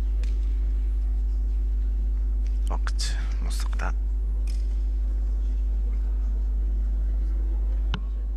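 A steady low electrical hum, with a brief spell of faint, hushed voices about three seconds in.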